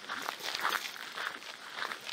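Footsteps of people walking on a gravel path, a steady run of steps about two a second.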